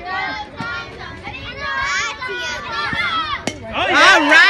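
Children's voices chattering and calling out, then a single sharp crack about three and a half seconds in as the bat strikes the softball, followed by louder cheering.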